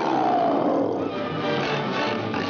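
A cartoon lion's roar, loud, dropping in pitch and dying away about a second in, over fast cartoon chase music that carries on.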